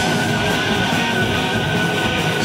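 Heavy metal band playing live, electric guitars prominent, with one high note held through the whole stretch.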